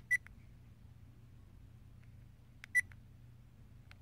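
ODRVM action camera beeping twice as its buttons are pressed, short high beeps about two and a half seconds apart, as the playback steps to the next stored photo.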